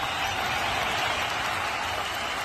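Audience applauding, a steady patter of clapping.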